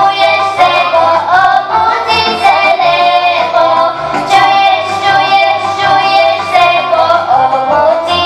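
Children's voices singing a folk song together over instrumental accompaniment with a steady, rhythmic bass line.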